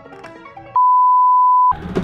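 Background music stops under a second in and is replaced by a loud, steady electronic bleep lasting about a second, the kind of tone dubbed over a word to censor it; other sound resumes just after it ends.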